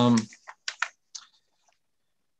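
The tail of a drawn-out 'um', followed by four or five short, soft clicks over about a second, like keystrokes on a computer keyboard picked up by a call microphone.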